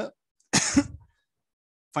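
A man clears his throat once, a short burst about half a second in, lasting about half a second.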